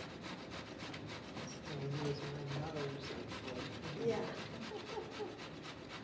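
Zucchini being grated on the coarse side of a hand grater: a steady run of quick, repeated rasping strokes.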